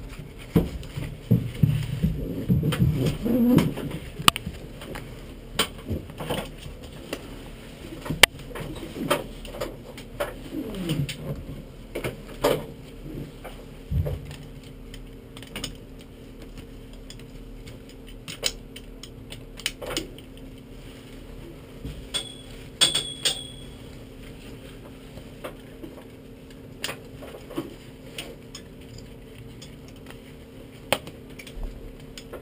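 Scattered clicks and knocks in the cockpit of a stationary race car, over a steady low hum. The knocks are busiest in the first half, and two short high chirps come a little past the middle.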